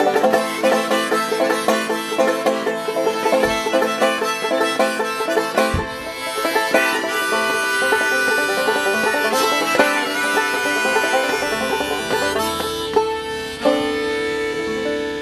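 Banjo and fiddle playing the instrumental ending of a folk song: quick-picked banjo notes in the first half give way to longer held notes, and the music eases off near the end.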